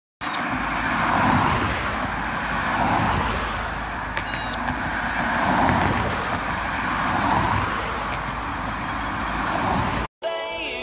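Road traffic noise: a steady rush of tyres and engines that swells and fades every couple of seconds as cars go by.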